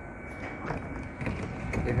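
Light-rail car's doors opening, a mechanical sound with a few clicks in the second half, over a steady low rumble.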